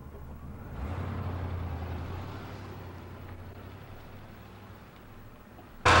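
A car, a Buick station wagon, pulling away: its engine and road noise swell about a second in, then fade steadily as it recedes. Right at the very end a sudden loud steady noise cuts in.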